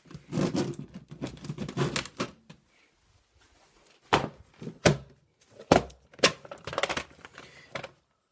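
VHS tapes and their plastic cases being handled: a couple of seconds of rustling and clattering, then, after a short pause, four or five sharp clicks and knocks.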